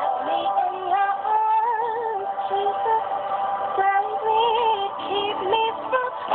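A recorded song played back from a computer: a woman's sung vocal, held notes with vibrato, over steady sustained musical backing.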